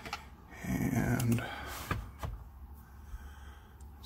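Handling noise from a 1/10-scale RC truck being turned upside down on its stand: its metal chassis plate and plastic parts scrape and knock, with a few sharp clicks.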